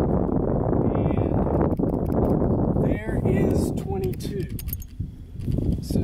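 Wind rumbling on the microphone through the first half. Past the middle there are a few short vocal sounds and grunts, and then some light clicks.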